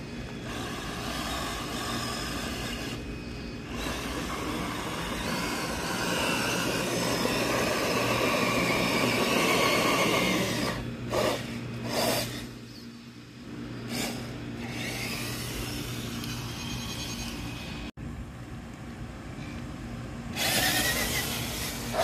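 Traxxas TRX-4 Sport RC crawler's electric motor and drivetrain whining as it drives and crawls over concrete, rising and falling with the throttle, with a few sharp knocks along the way and a louder stretch near the end.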